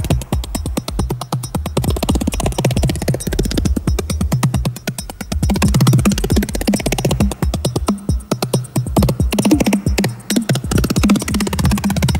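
Live electronic music played on synthesizer keyboards: a fast, even pulsing rhythm over deep bass, with keyboard notes played on top.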